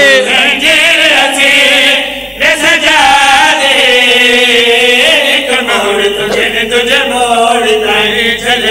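Several men's voices chanting a mournful religious lament together into microphones, in long drawn-out notes, loud and amplified; the voices break off briefly about two seconds in.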